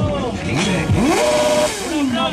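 Motorcycle engine revving hard: the pitch sweeps up quickly about a second in, holds high briefly, then falls away near the end.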